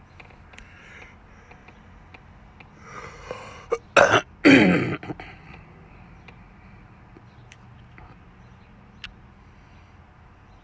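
A man clearing his throat, about four seconds in: two short loud rasps, the second sliding down in pitch as it fades. A faint steady hum and a few light clicks lie underneath.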